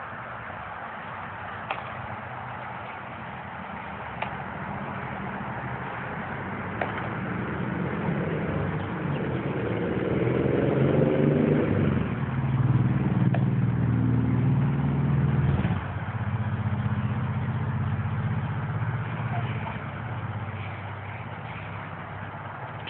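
An engine hums steadily in the background, swelling louder with its pitch rising and falling through the middle and dropping back about sixteen seconds in. Three sharp pops in the first seven seconds, a baseball smacking into a glove.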